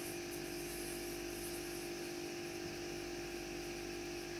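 Steady low hum with a faint hiss: background room tone, with no distinct sounds.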